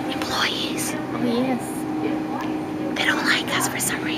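Whispered and quiet speech from a woman close to the microphone, over a steady low hum.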